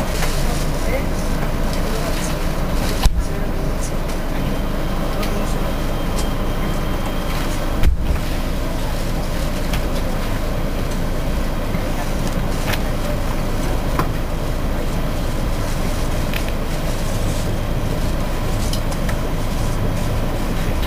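Commuter train rumbling steadily as it pulls out of a station and gathers speed, heard from inside the carriage. Two sharp knocks stand out, about three and eight seconds in.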